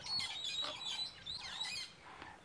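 Wild birds chirping in the surrounding bush: many short, high notes overlapping.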